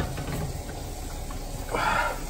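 Cheese being rubbed across a handheld plastic grater over a frying pan, a soft steady rasping with a louder scrape near the end, over a faint sizzle from the omelette cooking on a lowered flame.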